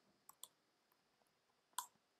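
A few faint clicks of computer keyboard keys over near silence: two quick ones in the first half second and a louder one near the end.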